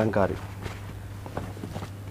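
A voice ends just after the start, then light scattered taps and rustling of cardboard boxes being handled, over a steady low hum.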